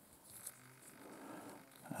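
Near silence with faint rustling from handling a small electrolytic capacitor and its wire and heat-shrink tubing in the fingers, with one soft tap about half a second in.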